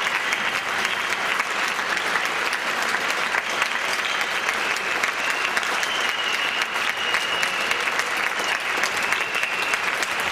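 Concert audience applauding steadily, many hands clapping at once in a hall.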